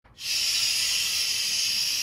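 A man making one long "shhh" shush through his teeth, a steady hiss that starts a moment in and holds.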